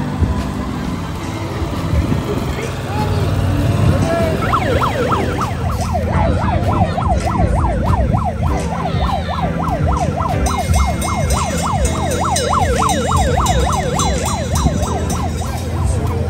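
An emergency vehicle's siren in a fast yelp, its pitch rising and falling about three times a second, coming in about four seconds in and still going at the end.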